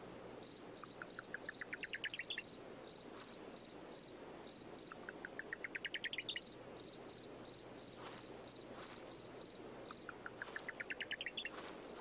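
Night insects: a cricket chirping steadily at a high pitch, about three chirps a second with short pauses, while a second call, a quick run of pulses rising in pitch, comes three times.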